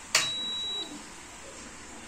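A sharp click, the INHEMETER prepaid meter's switch closing to connect the circuit once the token is accepted, followed at once by a single high, steady beep lasting under a second.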